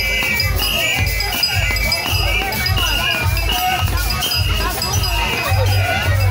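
Live traditional dance band drumming a steady, driving beat, with jingling rattles and voices singing over it.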